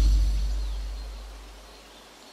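A deep bass note from the hip hop track dying away steadily into a pause in the music, leaving only faint hiss.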